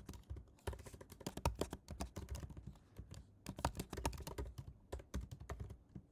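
Keystrokes on a computer keyboard, typed in quick runs of clicks with short pauses between them.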